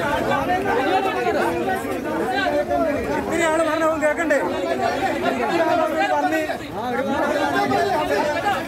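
A crowd of men arguing, many voices loud and overlapping.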